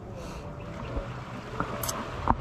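Sea water lapping and sloshing close to the microphone, with a few small ticks and drips.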